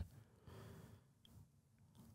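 Near silence: room tone, with a faint breath about half a second in.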